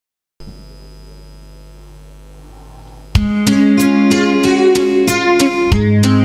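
A steady electrical hum from the amplified setup for about three seconds, then an acoustic-electric guitar comes in, playing the song's intro in even chord strokes about three a second over held low notes.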